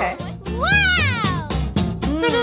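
A single high, meow-like cry about a second long, rising and then falling in pitch, over background music, just after a short laugh.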